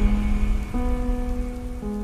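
Music: a sustained chord of held notes over a deep low rumble, the chord shifting to new notes about three quarters of a second in.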